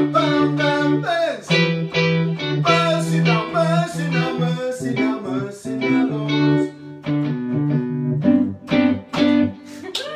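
Keyboard played in sustained chords over a steady bass line, with a man singing over it.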